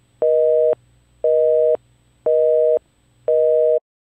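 Telephone busy signal: a steady two-tone beep sounding four times, about half a second on and half a second off, stopping shortly before the end.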